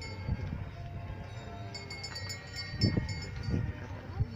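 High, bell-like metallic ringing: several small bells or chimes sound in a run of overlapping rings through the middle, over a few low thumps near the start and near the end.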